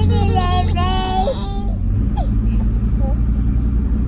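A young child's high-pitched, wavering voice, without words, for about the first second and a half. Under it runs the steady low drone of a 1998 Dodge Ram's 12-valve Cummins inline-six diesel, heard from inside the cab.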